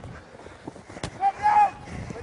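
Field sound of a rugby match in play: a sharp knock about halfway in, then a short shout.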